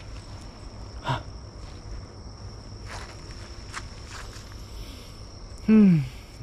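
Footsteps on gravel and dirt, with a steady high insect trill behind them. Just before the end a person gives a short, loud exclamation that falls in pitch.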